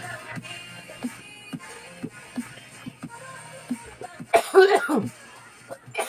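Soft background music, with a man coughing and clearing his throat near the end.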